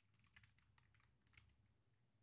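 Near silence with faint, scattered clicks of typing on a computer keyboard.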